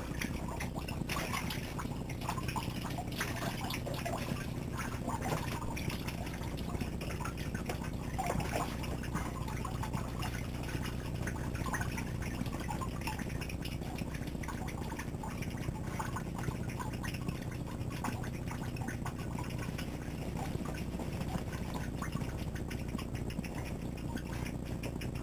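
A towel rubbing over wet hair and skin, with faint intermittent rustling over a low steady hum.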